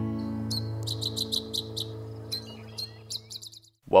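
A bird chirping in a quick run of short, high chirps, several a second, over the fading ring of a strummed acoustic guitar chord.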